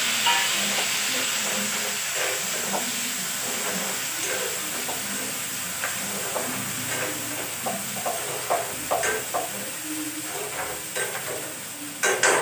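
Food sizzling steadily as it fries in a pan on a gas stove, a continuous hiss, with light clicks and taps of utensils against the pan and board that come more often in the second half.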